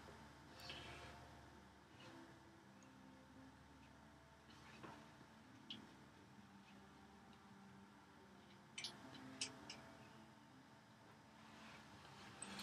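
Near silence, with a few faint light knocks and rubs from a hand plane sliding over a pine board. Its cutter is backed out, so it takes no shaving.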